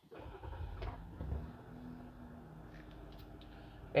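A 2023 Jeep Gladiator's 3.6-litre Pentastar V6 starting with a push-button start, heard from inside the cabin. It cranks and catches within about a second, then settles into a steady, quiet idle.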